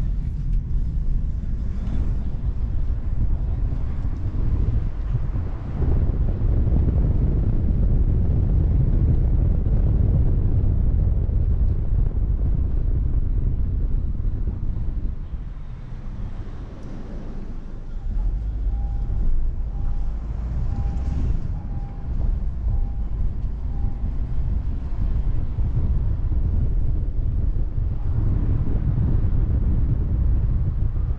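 Wind buffeting the microphone of a car-mounted action camera over the steady rumble of the car driving, easing off for a few seconds about halfway through. A run of about eight faint beeps comes around two-thirds of the way in.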